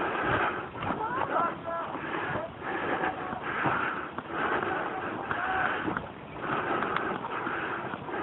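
Indistinct voices talking and calling, too unclear to make out, over a steady noisy background.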